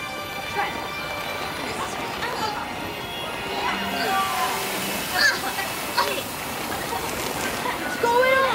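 Background music under children's short shouts and exclamations, with two sharp hits about five and six seconds in.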